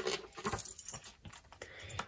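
A picture-book page being turned by hand: a few faint paper rustles and soft taps.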